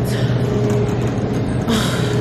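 Steady low hum of a supermarket's refrigerated display cases and ventilation, with a sigh at the start and a short breathy hiss near the end.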